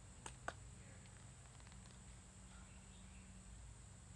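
Near silence: faint outdoor background with two short sharp clicks about a quarter and half a second in.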